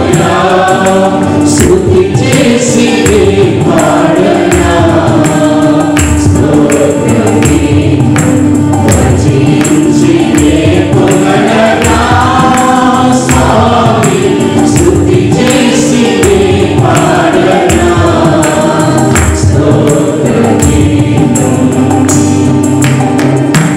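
Mixed church choir of men and women singing a Telugu Christian worship song over instrumental accompaniment with a steady percussion beat.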